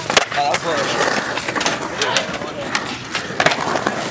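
Skateboard rolling on a concrete bowl: a steady wheel rumble broken by sharp clacks and knocks of the board, the loudest just after the start as the board comes down from a flip trick.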